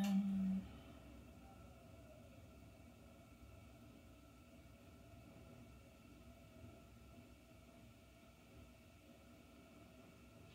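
Quiet room tone with a faint, steady hum. A short low steady tone, the loudest thing here, sounds at the very start and stops after about half a second.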